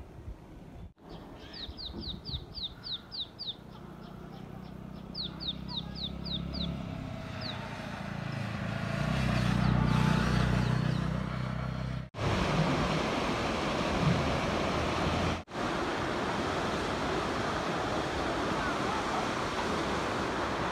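A bird calls in two quick runs of short descending notes, about four a second. A low rumble then swells and fades like a passing vehicle. After a cut a steady rushing noise takes over.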